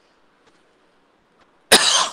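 Near silence, then a person coughs once, loudly, near the end.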